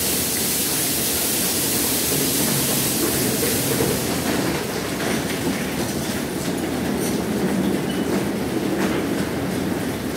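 Automatic tunnel car wash running: a steady mechanical rumble from the conveyor and the spinning red cloth washers, with scattered clacks. A loud high hiss goes with it until about four seconds in, then falls away.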